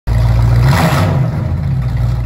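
Loud car engine sound with a deep steady rumble, starting abruptly, with a rushing swell of noise about a second in.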